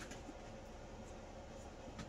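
Faint light rustling and small ticks of hands handling string and items on a tabletop, over a steady low room noise.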